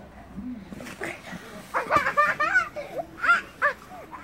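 A young child's high-pitched wordless voice: a string of short rising and falling calls in the second half.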